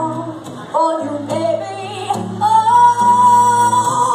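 A woman singing a blues song live, accompanied by her own acoustic guitar, holding one long note through the second half.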